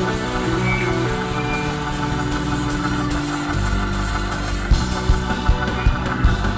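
Live church band playing: held keyboard chords, then a bass line and steady drum beats come in about three and a half seconds in.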